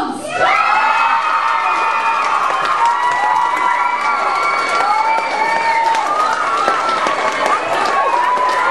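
A crowd of young people cheering and screaming, many high voices held long and overlapping, starting about half a second in.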